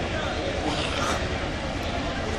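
Busy street ambience: a steady wash of traffic noise and crowd voices over a low rumble.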